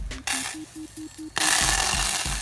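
Water hissing and sizzling in a very hot aluminium saucepan as Leidenfrost droplets collide and spatter; a loud, steady hiss starts suddenly about a second and a half in.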